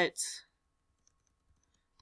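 Faint ticks of a computer mouse scroll wheel as a web page is scrolled, a few spread through an otherwise near-silent stretch, just after a short breath.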